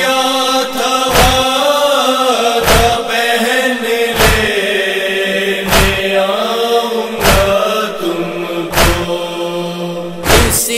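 Nauha lament chanted in a slow, mournful melody over a heavy thump about every second and a half, the beat of sina zani (matam chest-beating).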